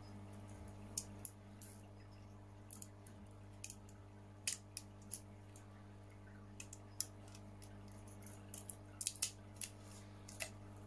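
Scissors snipping a plastic drinking straw shorter: irregular sharp snips and clicks, with a quick cluster near the end, over a steady low hum.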